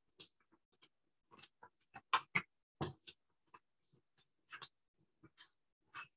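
Irregular short clicks and rustles of objects being handled close to a computer microphone, a dozen or so uneven knocks and scrapes with silence between, the loudest a little after two seconds in.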